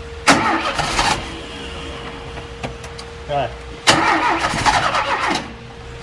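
Chevrolet Chevy 500's 1.6 four-cylinder engine being cranked by the starter in two short bursts, the first lasting under a second and the second about a second and a half, without settling into a steady idle.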